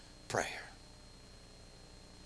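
A man's voice says a single word, followed by a pause of about a second and a half of faint room tone.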